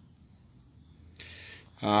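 Quiet background with a faint steady high-pitched whine, then a short soft hiss, like a breath, and a man starting to speak with "uh" near the end.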